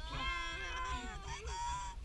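Children's voices making high-pitched, drawn-out wordless cries, two or more overlapping and wavering in pitch.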